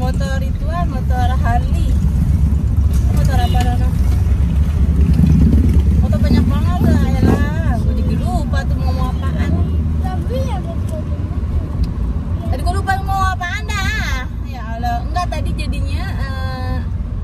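Steady low road and engine rumble inside a moving car's cabin, with a voice heard over it at intervals.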